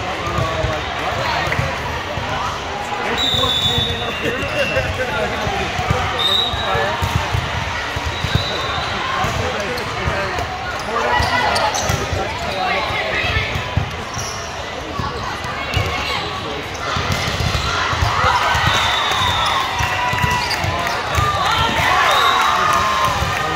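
Indoor volleyball play: a volleyball struck in passes, sets and hits, and sneakers squeaking briefly on the sport court, over constant talking and calling from spectators and players.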